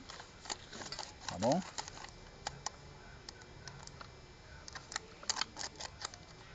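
Light, irregular clicks and taps of a clutch release bearing being handled and slid onto the gearbox's guide tube, its plastic bushing and metal parts knocking together, with several clicks in quick succession near the end.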